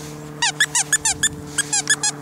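Puppy yipping in a rapid run of short, high-pitched calls, each dropping in pitch, about six a second, starting about half a second in. A steady low hum runs underneath.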